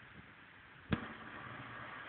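A single sharp click just under a second in, then faint steady hiss.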